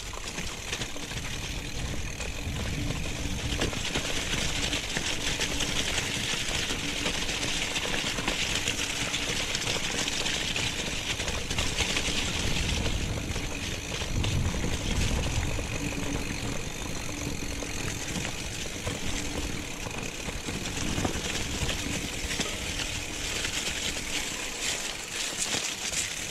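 Mountain bike rolling downhill over grass: a steady mix of low tyre rumble, bike rattle and a hissing rush.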